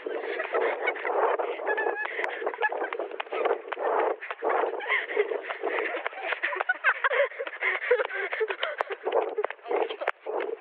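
Girls laughing and breathing hard as they run, over a dense run of irregular thuds from footsteps and the bouncing handheld camera.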